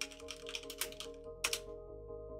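Computer keyboard typing: a quick run of keystrokes, ending in a louder key press about one and a half seconds in, over quiet background music.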